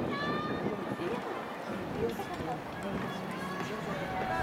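Distant voices of people around an outdoor athletics stadium calling out and talking, over a steady open-air background.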